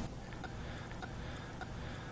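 Faint clicks, about one every 0.6 seconds, as the frequency control of the signal generator feeding the diode circuit is stepped up, over a low steady hum from the bench equipment.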